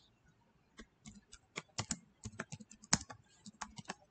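Keys of a calculator being pressed: a quick, irregular run of sharp clicks starting about a second in.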